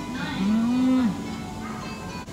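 A woman's closed-mouth 'mmm' of enjoyment while chewing a mouthful of food: one drawn-out hum, lasting under a second, over soft background music.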